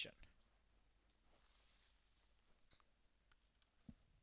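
Near silence with a few faint computer mouse clicks, the loudest just before the end.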